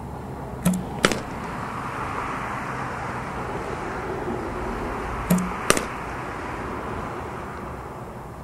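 Two pairs of sharp knocks of softballs being struck, about a second in and again about five seconds in. In each pair the two knocks come less than half a second apart, and the first carries a short low thud. Under them is a steady wash of outdoor noise.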